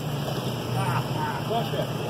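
Indistinct voices of bystanders talking in the background over a steady low hum.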